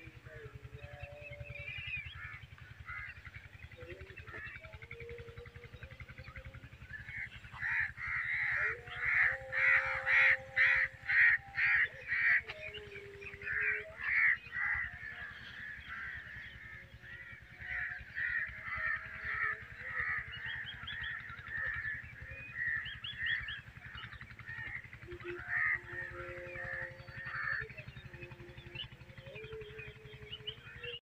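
Crows cawing again and again, loudest in a quick run of calls at about two a second a third of the way through, with scattered calls after, over a faint steady low hum.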